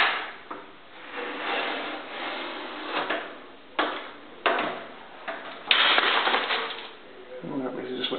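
Perfect G17 Pro Elite manual stack paper cutter: the long blade lever is pulled down and the blade slices through a clamped foam block with a soft rushing scrape, followed by several sharp clacks of the lever and clamp, the loudest about six seconds in.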